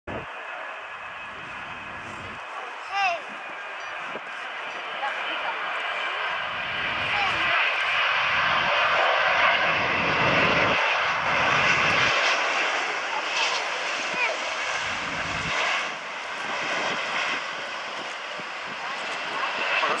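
Boeing 777-200 airliner's twin GE90 turbofan engines at approach thrust, a steady whine and rush that grows louder as the jet comes in, is loudest around ten seconds in, and then eases off as it reaches the runway. A brief sharp chirp sounds about three seconds in.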